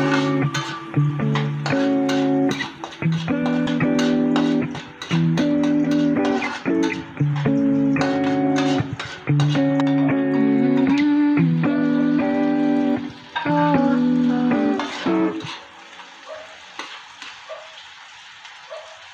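Background music with plucked guitar and bass in a steady pattern. The music drops away about fifteen seconds in. Faint frying and spatula stirring in a wok can be heard underneath.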